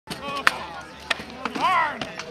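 Three sharp knocks, the first the loudest, amid people's voices, with one voice rising and falling near the end.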